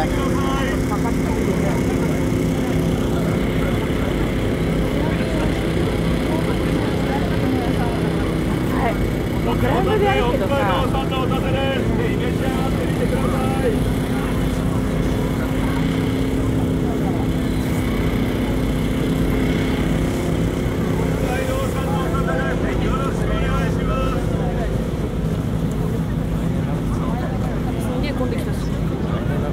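Crowd of people chatting around the walker, individual voices rising out of the babble now and then, over a steady low mechanical hum.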